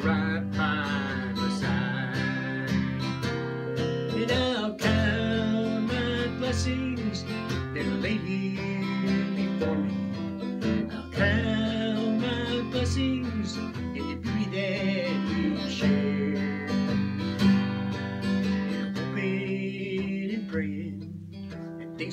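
Acoustic guitar strummed in slow chords, with a man singing over it in a slow country style.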